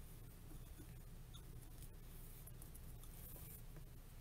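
Faint rustling of ribbon being folded into loops on a bow maker, with a few light ticks, over a steady low hum.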